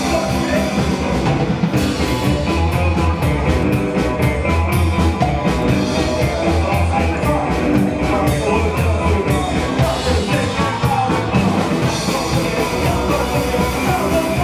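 Live rockabilly-style band playing: hollow-body electric guitar, upright double bass and drum kit, over a steady drum beat.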